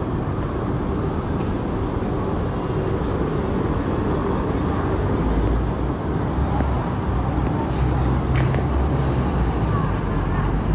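Steady outdoor street noise: a low traffic rumble that grows louder about halfway through.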